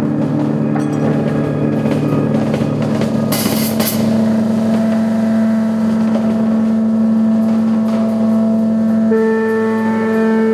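Live rock band with electric bass and drums playing long, droning held notes through amplifiers. A short cymbal wash comes about three and a half seconds in, and a new, higher held note joins near the end.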